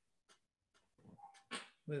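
About a second of near silence, then faint, short vocal sounds from a man with cerebral palsy working to get a word out, ending on the spoken word "with".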